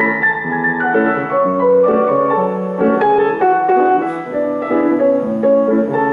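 Grand piano played live: an instrumental passage of struck notes and chords, moving at a moderate pace.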